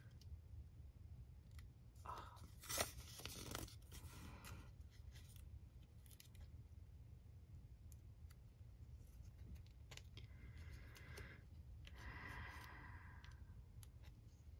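Faint paper handling: fingertips picking and scratching at the edge of a sticker sheet, trying to lift its backing paper. It comes in a few short rustling spells, the sharpest about three seconds in, over a low steady room hum.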